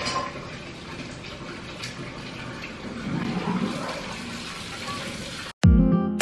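Steady, even rushing noise with no clear pattern. About half a second before the end it cuts off, and loud plucked-guitar background music starts.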